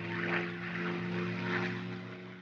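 Propeller aircraft engines droning steadily, with a whooshing rush that swells twice and begins to fade at the very end.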